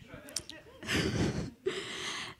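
Two breaths close to a handheld microphone, the first about a second in and the second near the end, each a short hiss.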